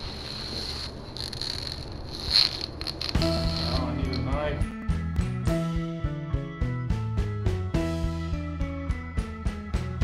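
Plastic packing wrap and cardboard rustling as parts are pulled from a shipping box, with one sharp crackle a little over two seconds in. About three seconds in, background music with a steady drum beat starts and covers the rest.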